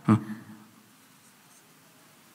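A man's voice says a short "eh?" through a microphone, then near silence: room tone.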